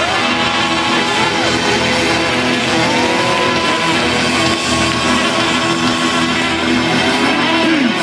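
A live band playing amplified music through a concert sound system, loud and steady, with a few sliding notes: one rising at the start, one about three seconds in, and one falling near the end.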